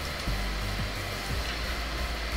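Steady background noise: an even hiss with a low hum beneath it, and a few faint low knocks.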